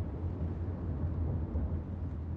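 Steady low rumble of a moving car, heard from inside the cabin.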